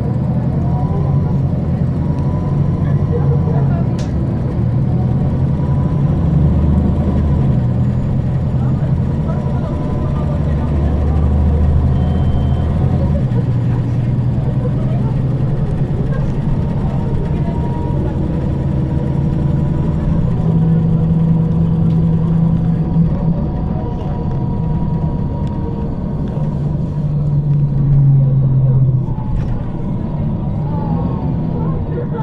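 MAN E2866 straight-six natural-gas engine of a 2009 MAN 18.310 HOCL-NL city bus, heard from inside the bus while it drives, its note rising and falling with speed several times.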